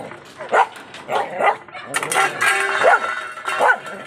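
Beagle barking in repeated bursts, with one longer, drawn-out bark around the middle.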